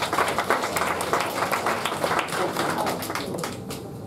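Audience applauding: many hands clapping densely, thinning out near the end.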